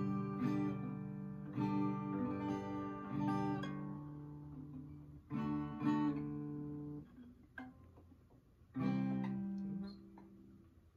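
Acoustic guitar strummed slowly by a beginner practising chords: single strums left to ring, one every second or so, then a pause of nearly two seconds before a last chord near the end.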